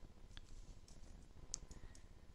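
A few faint clicks of a computer mouse, the loudest about one and a half seconds in.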